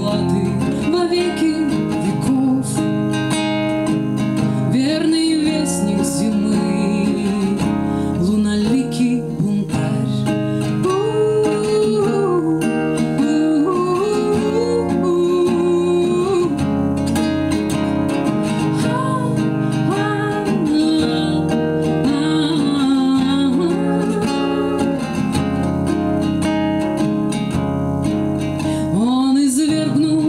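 A woman singing a slow song to her own strummed acoustic guitar.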